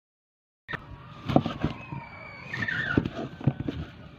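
Kitchen knife chopping banana on a wooden chopping block: a series of sharp, irregular knocks starting abruptly just under a second in. A short, falling squeal is heard about two seconds in.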